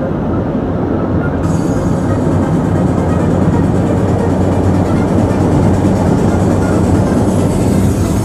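Steady road, tyre and wind noise heard from inside the cabin of a moving Honda car at road speed. The high hiss gets brighter about a second and a half in.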